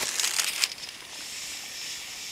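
Snow crunching and crackling in quick strokes for about the first half-second, then a steady high hiss.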